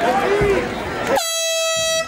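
Crowd and corner voices shouting, cut across just past halfway by a sudden, steady horn blast. The horn signals the end of the fight's final round.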